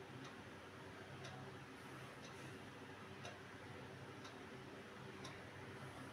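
Faint ticking of a clock, one tick about every second, over a low steady hum.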